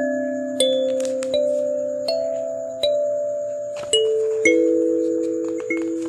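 Kalimba music: a slow melody of plucked metal-tine notes, about one every three-quarters of a second, each ringing on and fading.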